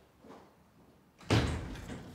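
A door banging once, a sudden loud thump a little over a second in that rings out and fades over about half a second.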